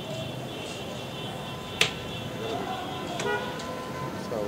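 A butcher's meat cleaver chopping once into a wooden block, a single sharp strike a little under two seconds in, over a steady background hum with faint tones.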